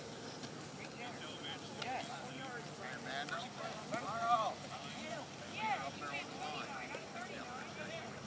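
Indistinct calls and chatter of young football players' voices, carrying across the field in no clear words, loudest about four seconds in.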